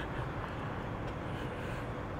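Steady, low outdoor ambience: a faint, even hum of distant traffic, with no distinct events.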